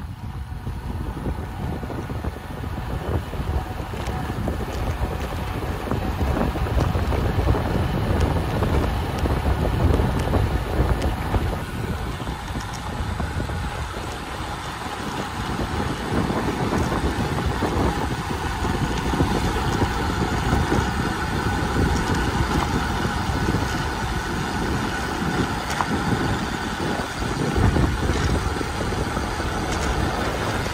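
Wind buffeting the microphone and tyre noise from a bicycle descending a paved road, a loud, steady rush that swells and eases with speed.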